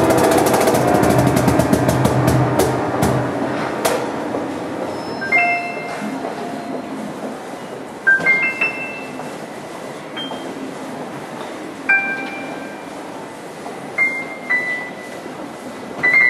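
Live instrumental music: a full keyboard passage rings out and dies away over the first few seconds, with a few sharp taps. Then the keyboard plays slow, sparse, high bell-like single notes, a quiet melody.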